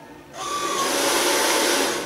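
Hair dryer blowing: a loud, steady rush of air that starts shortly in and fades away near the end, briefly carrying a faint motor whine as it starts.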